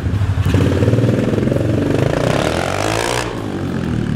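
Modified semi-automatic mini dirt bike (pit bike) engine running loud as it is ridden, revving up through the middle and then easing off.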